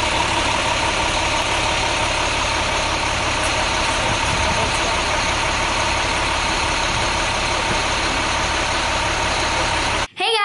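Box truck's engine idling steadily at a constant level.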